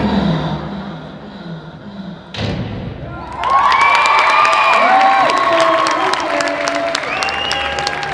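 The routine's music fades out, and a single loud thump comes about two and a half seconds in. About a second later the audience breaks into cheering and clapping, with high shouts and whoops over the applause.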